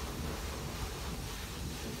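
Wind buffeting an outdoor microphone: a steady low rumble with a light hiss over it.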